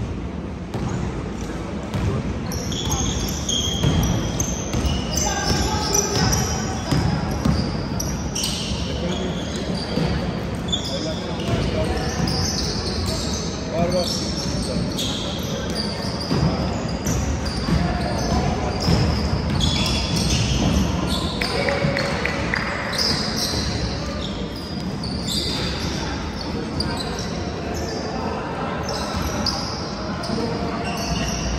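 Basketball game on a hardwood gym court: sneakers squeaking over and over, the ball bouncing, and players' and spectators' voices calling out.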